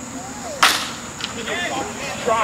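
A wooden baseball bat hits a pitched ball with one sharp crack about half a second in.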